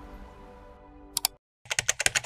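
Background music fading away, then a quick run of computer-keyboard typing clicks starting a little over a second in, an end-screen sound effect.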